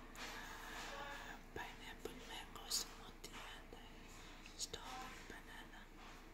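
Quiet whispering voices, with a few sharp hissy 's' sounds.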